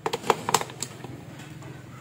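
Plastic clicks and knocks of cylindrical lithium-ion cells being pushed into the spring-loaded slots of a LiitoKala battery charger: about six sharp clicks in quick succession in the first second, then a few fainter ones.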